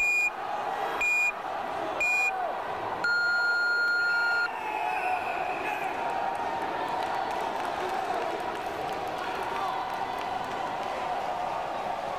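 Electronic match timer counting down the last seconds with three short high beeps, one a second, then a longer, lower tone about a second and a half long marking the end of the bout. Afterwards a hall crowd murmurs.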